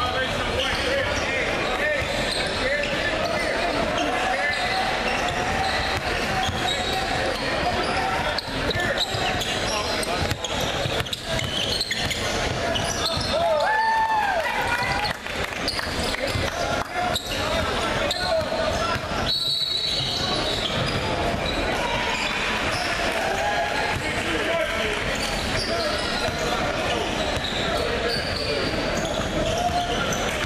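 Indoor basketball gym: many voices talking and shouting in an echoing hall, with a basketball bouncing on the hardwood floor. A referee's whistle sounds briefly about two-thirds of the way through.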